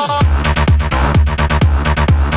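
Dirty Dutch house music in a DJ mix: a synth line sweeps down in pitch and the full beat drops in just after the start. It runs as a steady kick drum about twice a second under bright synth stabs.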